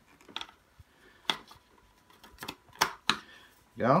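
Plastic parts of a Stokke Xplory stroller's handle mechanism clicking and knocking as they are fitted together by hand: a handful of sharp, irregularly spaced clicks.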